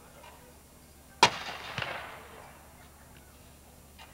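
Gun-salute volley: one sharp, loud gunshot crack a little over a second in, then a smaller second crack about half a second later, trailing off in an echo.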